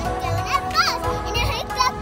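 A young girl's high-pitched voice in several short, excited sounds, with music playing underneath.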